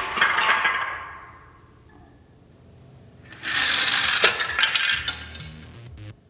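Plastic Crashmobile toy car rolling on a hardwood floor, then, about three and a half seconds in, a clattering crack as its front bumper strikes, the spring clip releases and the car pops apart, its plastic pieces skittering across the floor.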